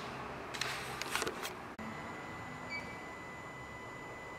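A few short clicks and rustles of handling in the first second and a half. After an abrupt cut, quiet workshop room tone with a faint, steady high-pitched whine.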